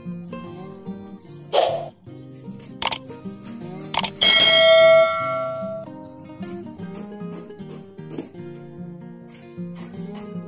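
Background guitar music playing steadily. About four seconds in, a few clicks lead into a bright bell-like ding that rings for over a second: the notification-bell sound effect of a subscribe-button animation.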